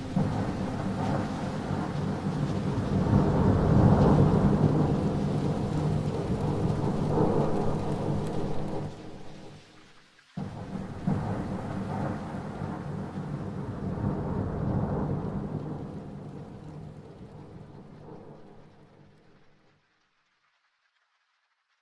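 Rain falling with rolling thunder. One long rumble swells and dies away about halfway through, then a second starts suddenly and fades out just before the end.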